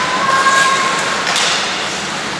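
Ice hockey play: skate blades scraping and carving the ice with a few sharp clacks of sticks and puck, over the rink's steady noise. A short held high tone sounds near the start.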